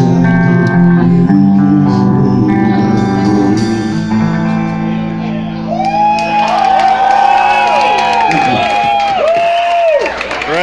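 Live rock band with amplified electric guitar and drums holding out a final chord. From about halfway, sliding, wailing high notes arch up and down over it, and the music cuts off at the end.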